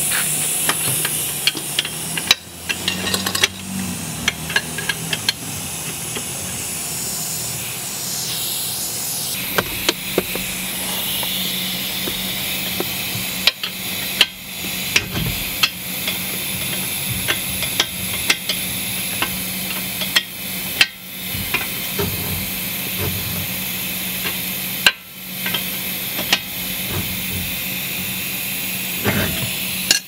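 Irregular metallic clicks and knocks of a wrench working the lower ball joint's castle nut tight, over a steady hiss and low hum.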